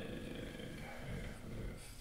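A man's quiet, low, drawn-out hesitation sound, an 'uhh' murmured while he searches for words.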